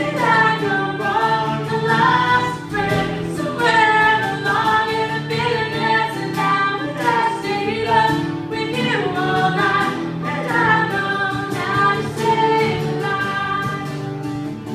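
A woman singing, accompanied by a strummed acoustic guitar, performed live.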